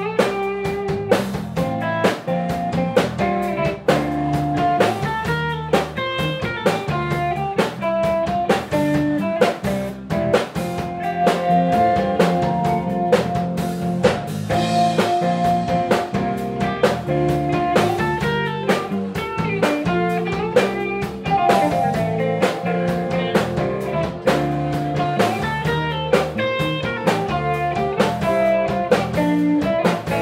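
Live band playing an instrumental piece: electric guitars over a drum kit, with a mallet-played keyboard instrument. A long held melody note carries through the middle, with steady drum hits throughout.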